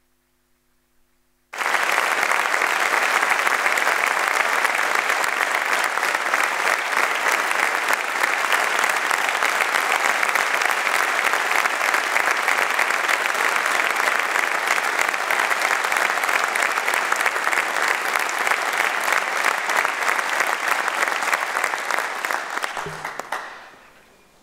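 Audience applause, starting suddenly about a second and a half in, holding steady and then dying away near the end.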